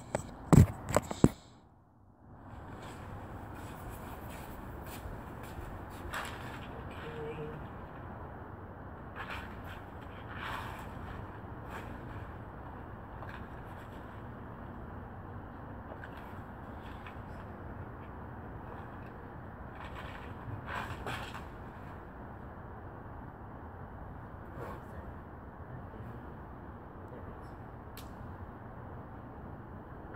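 A few sharp knocks as a phone is handled and set down on a wooden deck railing. Then a steady outdoor hiss with scattered faint clicks and taps.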